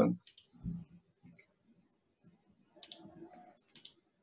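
Faint computer mouse clicks over a video-call line: one just after the start, then a short cluster about three seconds in, with soft handling noise.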